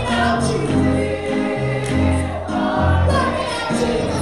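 Gospel praise-and-worship singing: a small group of voices, mostly women, singing together into microphones over an instrumental accompaniment with a deep bass line that moves note to note.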